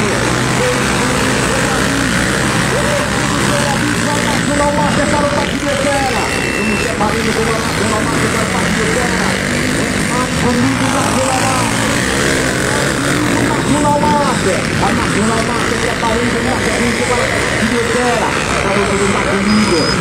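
Several trail dirt bikes' engines running and revving continuously as they race around a dirt track, mixed with voices.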